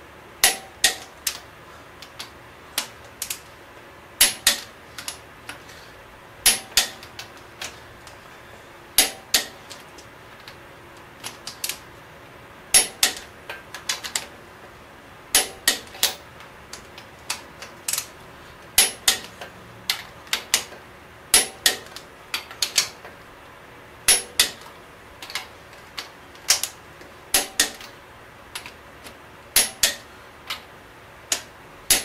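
Click-type torque wrench on cylinder head bolts being taken to the final 80 ft-lb torque setting. Sharp metallic clicks come in small quick clusters every couple of seconds: the ratchet, and the wrench clicking over as each bolt reaches its setting.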